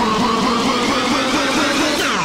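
Hardcore gabber track: a dense, distorted synth wash with held tones and many rising sweeps, cutting in suddenly right after a brief drop-out.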